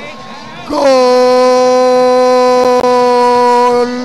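A man's voice holds one long, steady, high shout for about three seconds, starting about a second in after a brief lull: a football commentator's drawn-out 'Gooool' goal cry.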